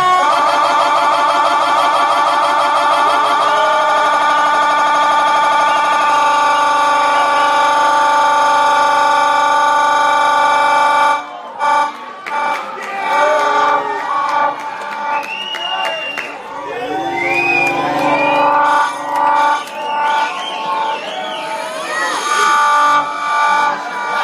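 A DJ's live set through the venue's sound system: a loud held chord, wavering for the first few seconds and then steady, cuts off suddenly about eleven seconds in. It gives way to swooping, siren-like sliding pitches that rise and fall in short phrases.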